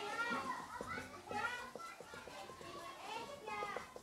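Faint children's voices chattering and calling in the background.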